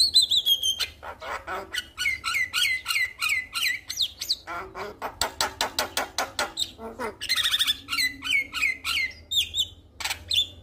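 Male Javan myna in full song: a fast, unbroken run of clicks and harsh chatter. A falling whistle opens it, and two runs of short repeated whistled notes come in, the first about two seconds in and the second near the end.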